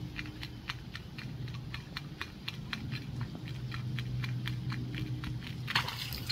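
Fishing retrieve of a wooden two-piece wake bait on a baitcasting reel: a regular light clicking, about five clicks a second, over a low steady hum as the bait is reeled slowly and rocks back and forth. Just before the end, a louder rush of splashing water comes in as the retrieve speeds up.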